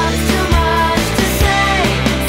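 Rock band playing a full-band passage: drums striking a steady beat about twice a second under bass and guitars, with a high melody line that slides in pitch.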